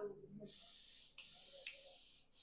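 Compressed-air paint spray gun hissing in a steady spray from about half a second in, with a brief break just past a second.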